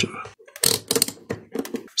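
Rotary range selector of a digital multimeter being turned to the diode-test setting: a quick run of sharp detent clicks as the dial passes through its positions.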